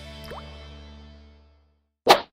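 Channel intro music ending on a held chord that fades out to silence, with one short rising bloop sound effect about a third of a second in.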